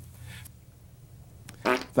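A low, drawn-out fart sound lasting about a second and a half, followed by a click.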